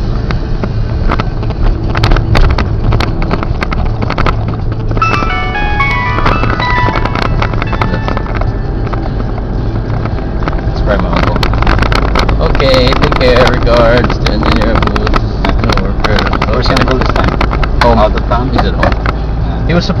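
Steady engine and road rumble inside a moving vehicle, with frequent rattles and knocks from bumps in the road. About five seconds in, a short run of beeping musical notes steps downward in pitch.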